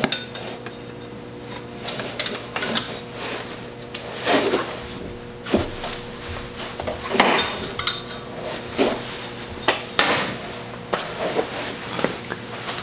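Metal hand tools, a wrench with a cheater-bar pipe over its handle, clinking and knocking in irregular separate clicks as a small 8 mm bolt is worked loose. A steady low hum runs underneath.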